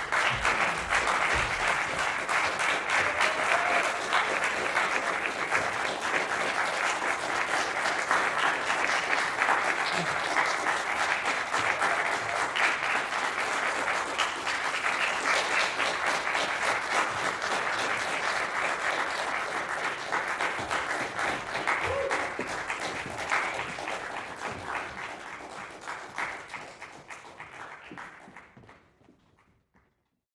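Audience applauding: dense clapping that starts abruptly, holds steady for most of the stretch, then dies away over the last few seconds.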